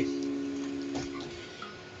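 Notes of a nylon-string requinto guitar ringing on and dying away after the playing has stopped, with a faint tap about a second in.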